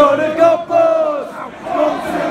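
Football crowd in the stands chanting and shouting, with loud men's voices close by holding drawn-out notes that fall away about halfway through.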